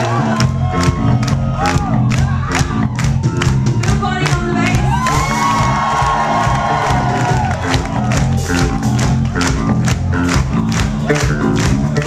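Live indie-pop band playing, with drum kit keeping a steady beat under bass, electric guitar and ukulele, and crowd cheering mixed in.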